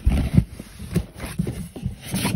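Cardboard shipping box being handled and opened: irregular knocks, thumps and scrapes, loudest in the first half second.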